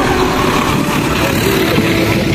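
The engine of a rescue jeep running: a steady, noisy rumble.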